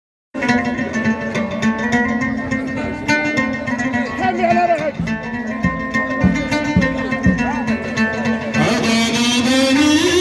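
Traditional folk ensemble playing: plucked string instrument and hand drums with a voice over a steady low drone. The music cuts in just after the start and grows fuller from about eight and a half seconds in.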